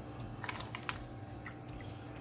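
Light clicks and rattles of dry chana dal grains shifting against a stainless-steel mixer-grinder jar, bunched together about half a second in, with a few fainter ones later. A faint steady hum sits underneath.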